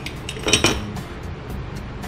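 Aluminum injection-mold halves clinking against each other and the workbench as they are handled, with a few sharp metallic knocks about half a second in, over a steady low hum.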